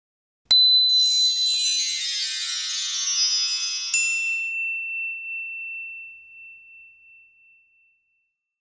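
Logo-sting sound effect: a shimmering cascade of bright chimes strikes suddenly about half a second in and slowly dies away. A second sparkling ping comes near four seconds, then a single high tone rings on and fades out.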